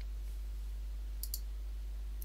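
A computer mouse button clicked, heard as two quick clicks (press and release) a little over a second in, over a steady low hum.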